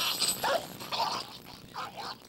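A dog barking in short, sharp yelps, about four in two seconds.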